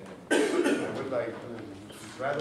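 A person coughs loudly and suddenly close to the microphone about a third of a second in, trailing off into low voices in the room.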